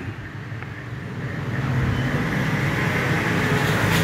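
A steady low rumbling noise that grows gradually louder, of the kind a road vehicle makes as it approaches.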